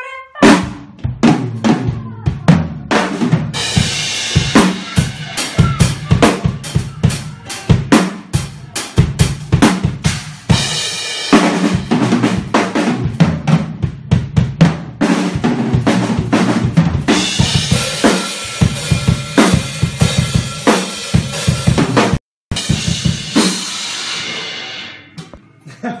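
Drum kit played fast, with rapid bass drum and snare hits and stretches of cymbal wash layered over them. The sound cuts out for a moment near the end, from a laggy stream connection.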